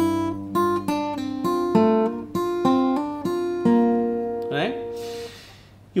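Takamine acoustic guitar fingerpicked: a quick riff of single notes with hammer-ons and pull-offs over a held low G bass note. It ends about four seconds in on a note left ringing.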